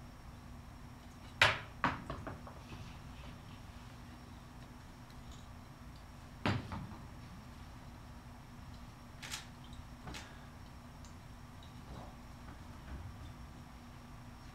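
A few sharp knocks and clatters from handling things in a quiet room. The loudest is about a second and a half in, with a smaller one just after, another around six and a half seconds, and two lighter taps around nine and ten seconds, over a steady faint electrical hum.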